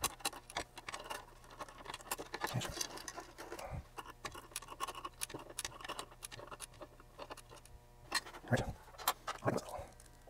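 Hand reassembly of a metal instrument chassis: small metal parts and a hand tool clicking, tapping and scraping in quick irregular succession.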